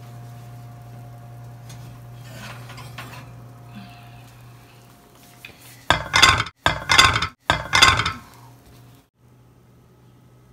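Glass baking dish being handled on a kitchen countertop, clattering and scraping in three short loud bursts about six to eight seconds in, over a steady low oven hum.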